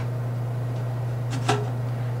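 A steady low hum, with a couple of brief sharp clicks about one and a half seconds in.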